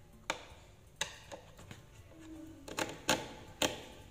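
A string of sharp, irregular clicks and taps from hands and a tool working a woofer loose from a speaker cabinet, the two loudest near the end.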